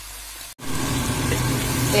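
Langostinos and vegetables frying in oil in a pan, a quiet steady sizzle that cuts off abruptly about half a second in. Then a louder sizzle of crushed tomato frying in the pan follows, with a steady low hum beneath it.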